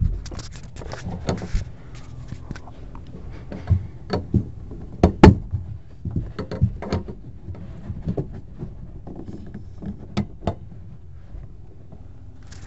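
Irregular clicks and knocks of brass air fittings and a hose coupler being handled and set down, with tools shifted in a plastic case; the loudest knock comes about five seconds in.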